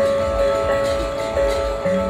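Gamelatron robotic gamelan: bronze gongs struck by mechanical mallets, several tones ringing on and overlapping in a steady chord, with soft new strikes now and then and a lower tone coming in near the end.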